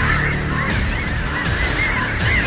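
A bird calling over and over in short arched chirps, several a second, over a low steady drone.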